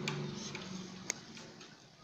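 Marker pen writing faintly on a whiteboard, with light scattered ticks and one sharp tick about a second in.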